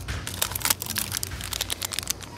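Plastic candy-rope wrappers crinkling, with a quick run of small crackles as the packs are handled and pulled from a shelf display box.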